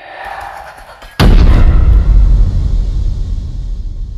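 A sudden deep cinematic boom, a horror-film impact hit, about a second in, very loud, with a low rumble that dies away slowly over the following seconds.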